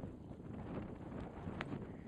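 Wind buffeting the camera microphone as a steady low rumble, with one faint click near the end.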